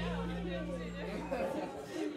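Audience chatter between songs, over a low steady tone from the band's gear that cuts off about a second and a half in.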